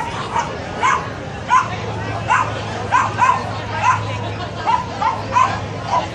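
A small dog yapping over and over, about a dozen short, high-pitched yaps at roughly two a second.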